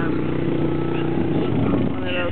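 A vehicle engine running at a steady idle-like note, which fades out a little past halfway.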